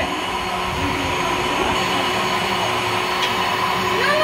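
A steady whirring motor noise with a constant hum, running without a break.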